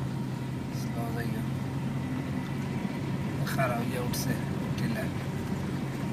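Car engine and tyre noise heard from inside the cabin, a steady low hum under a hiss of road noise. Faint voice fragments break in about a second in and again around three and a half seconds in.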